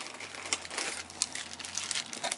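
Clear plastic wrapping crinkling in the hands as a small wrapped item is lifted out of a cardboard box, with a few sharp crackles.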